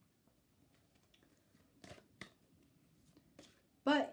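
Playing-card-sized oracle cards handled on a wooden table: a few faint ticks and two short taps close together about two seconds in.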